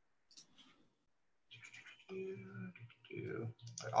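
A few faint computer mouse clicks as someone works in software, with a man's drawn-out, wordless voice sounds ("uh").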